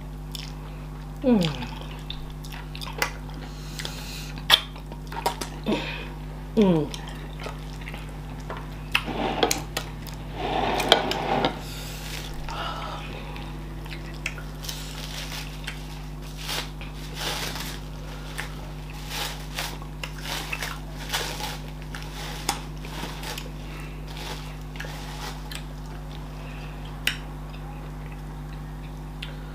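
Close-up eating sounds of fufu and okra soup eaten by hand: wet squelching and smacking as the dough is pinched and dipped, chewing, and light clicks against the plates. Two brief falling hums come in the first few seconds.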